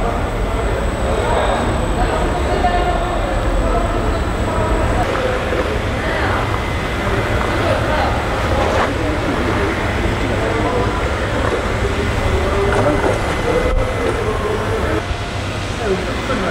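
Steady low rumble with indistinct voices talking over it, unbroken throughout.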